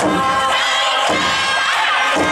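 Many young voices shouting together in chorus, the festival calls of a dancing troupe, over steady festival music.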